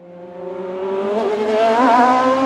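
Racing car engine sound, fading in and growing steadily louder as its pitch slowly rises, as if accelerating toward the listener.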